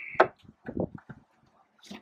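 Metal flush-mount pull latch on a fibreglass deck hatch being lifted and turned by hand: a sharp click near the start, then a few light knocks and taps as the hatch is worked loose.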